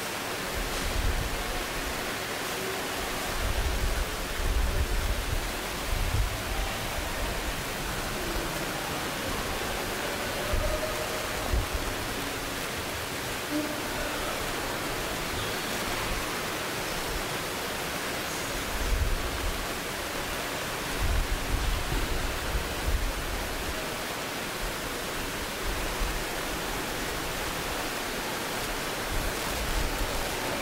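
A steady hiss of background noise with irregular low rumbles coming and going; no one speaks.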